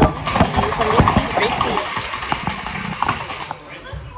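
A toast of "cin cin" spoken at a table, followed by a scatter of short, light clicks and knocks that fade out toward the end.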